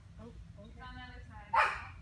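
A single sharp dog bark about one and a half seconds in, with faint voices underneath.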